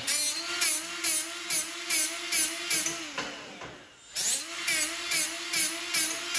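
Die grinder running at high speed, its abrasive pressed against the edge of a steel tube in repeated strokes about twice a second, grinding off mill scale before welding. The motor's pitch dips at each stroke as it loads. It eases off briefly about halfway through, then picks up again.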